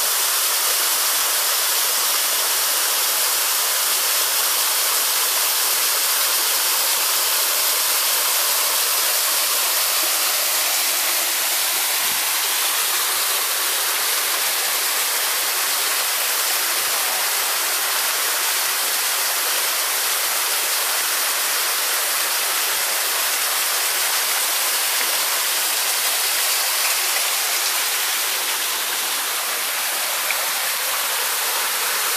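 A small waterfall and stream splashing steadily over rocks.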